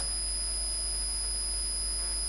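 Steady electrical background noise of the recording: a low hum with a thin, steady high-pitched whine over it, and no other sound.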